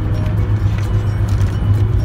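Steady low drone of road and engine noise inside a moving car's cabin.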